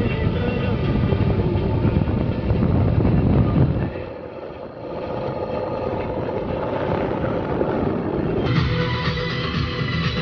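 Car running along a road, heard from inside the cabin, with music playing over it. The rumble eases about four seconds in, and near the end the sound changes suddenly to clearer music.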